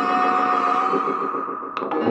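A held electronic drone from a keyboard run through effects units: a stack of steady tones whose high overtones fade away over the second second. Two short clicks come near the end.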